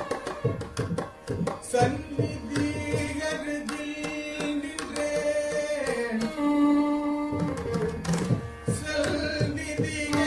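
Live Carnatic music in raga Kalyani: a male voice sings a gliding melodic line, shadowed by violin, over mridangam strokes in rupaka tala.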